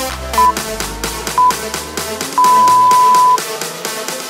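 Workout interval timer beeping over electronic dance music: two short beeps a second apart, then one long beep of about a second marking the end of the 40-second work interval. The music's bass drops out about halfway through.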